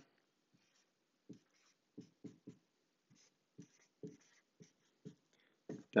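Dry-erase marker writing on a whiteboard: a dozen or so short, faint strokes as figures are written and crossed out.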